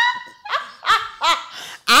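A woman laughing in three short bursts about half a second apart, trailing off.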